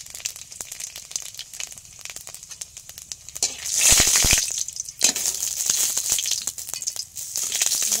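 Panch phoron spices and dried red chillies crackling in hot oil in an iron kadai. About three and a half seconds in, a spatula stirs through the pan and the sizzle turns loud for a second or two before settling back to a steady crackle.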